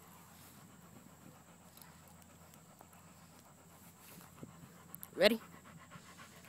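A husky panting quietly and steadily, close up.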